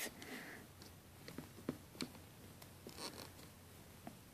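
Faint scraping and a few small, sharp clicks of a metal loom hook working against tightly stacked rubber bands and clear plastic loom pins.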